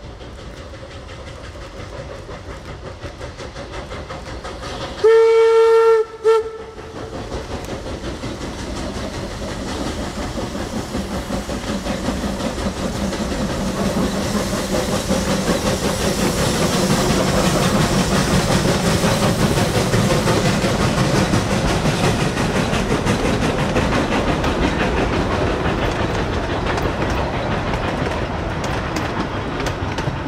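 A steam locomotive whistle blows once for about a second around five seconds in, with a short toot just after. Then the exhaust of two 1875-built wood-burning steam locomotives, a 4-4-0 and a 2-6-0, grows louder as they pass at their loudest mid-way. The coaches roll by on the rails near the end.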